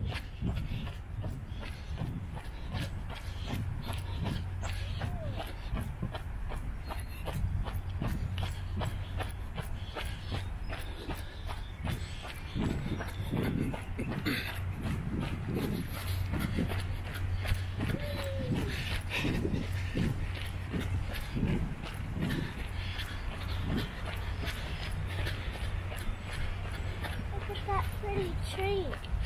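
Steady low rumble of a bicycle rolling along a paved path, with wind on the microphone. In the middle stretch comes a run of irregular low knocks and one brief rising call.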